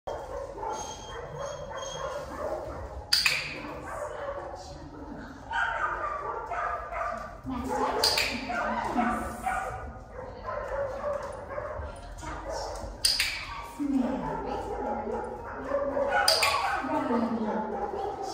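A dog barking in a large, hard-walled room, with four sharp barks spaced several seconds apart, each echoing briefly.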